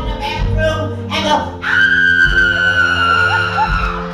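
Live band accompaniment: a keyboard holding sustained chords under the talk. From a little under halfway in, a long high note is held for about two seconds, sinking slightly before it stops near the end.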